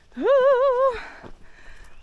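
A high "woo!" called out by a person, just under a second long, its pitch wobbling up and down several times.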